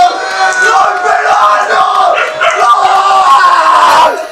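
Men shouting and yelling loudly and continuously, a fan celebration of a goal.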